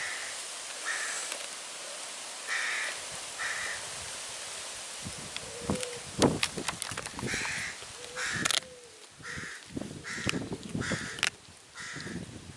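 A German Shepherd chewing a raw, semi-frozen ostrich neck: sharp cracks and crunches of frozen meat and bone between its teeth, loudest in the second half. A bird in the background gives short, harsh calls again and again.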